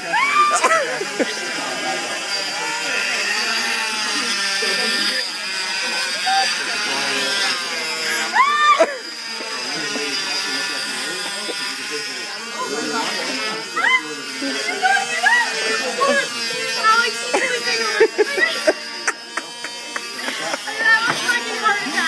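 Electric oscillating cast saw running with a steady buzzing whine as it cuts through a cast on a forearm. Voices and excited laughter are heard over it.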